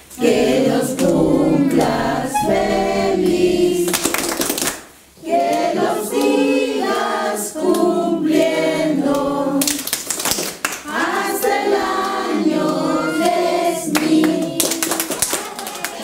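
A group of people singing a birthday song together around a cake with lit candles, with short bursts of noise between verses.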